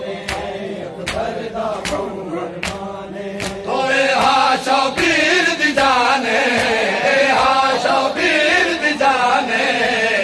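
A crowd of mourners beating their chests in matam, sharp hand slaps about every half second. About four seconds in, a group of male noha reciters starts chanting a Punjabi lament loudly over them.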